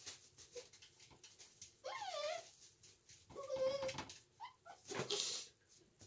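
A puppy whining in short high-pitched calls: one rising and falling about two seconds in, a longer steady one just after three seconds, then a couple of brief yips and a sharp noisy burst near five seconds.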